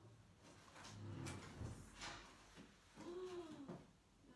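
Faint light knocks and rustles of belongings being handled on a table, a few sharp taps about a second to two seconds in. Near the end comes one short pitched sound that rises and then falls.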